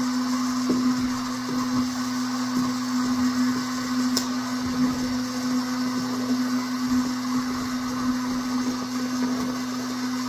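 Heat gun running steadily, a constant motor hum with a hiss of blown air, used to soften the tail light's sealant so the housing can be opened. A few light clicks and taps from prying at the housing sound over it.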